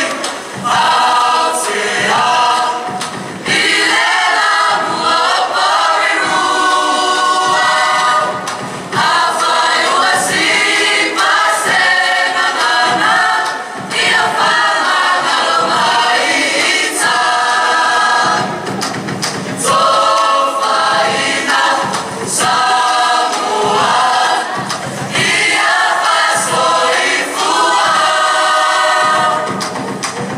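A large Samoan student group of men and women singing together as a choir, in sung phrases of a few seconds each with short breaks between them.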